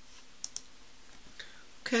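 Two quick, sharp clicks about half a second in, a tenth of a second apart, over faint steady hiss.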